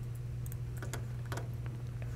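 About four short, scattered clicks from a computer keyboard and mouse being worked, over a steady low electrical hum.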